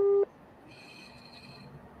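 A short electronic telephone beep: one steady tone lasting about a quarter second right at the start, the second of two quick beeps. After it come faint high-pitched tones in the middle over a low line hiss.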